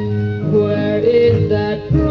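A Filipino pop song playing from a 45 rpm vinyl single: a female voice singing over a band with a steady bass line, the sound dull at the top.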